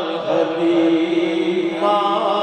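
A man's voice reciting a naat into a microphone, singing long, drawn-out notes, with a new phrase beginning near the end.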